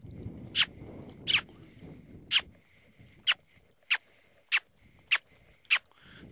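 A horse trainer's smooching (kissing noises made with the lips): about eight short, sharp, high squeaks in a row, roughly one every 0.6 to 1 s. They are the cue driving a saddled mare up from the trot into the lope. A softer low rustling sits under them in the first two seconds.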